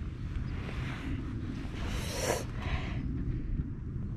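Wind buffeting the microphone, a steady low rumble, with a brief rustling noise about two seconds in.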